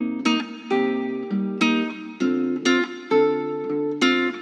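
A picked guitar melody of single notes, about two a second, each ringing on into the next, played back through the ValhallaRoom reverb plugin set to Large Room mode.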